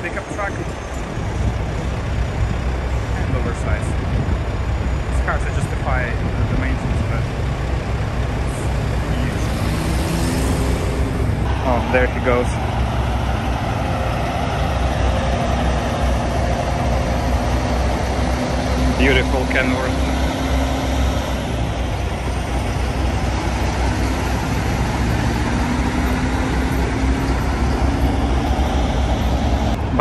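Diesel engines of heavy-haul semi-truck tractors, running at low speed as they pull an oversized load on a lowboy trailer past and away, a constant low rumble with a steady engine tone over the second half.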